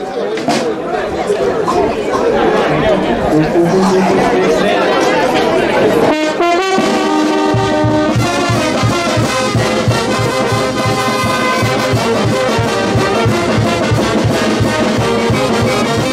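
Street brass band music strikes up about six seconds in, held brass chords with a steady bass beat joining a second later, over crowd chatter.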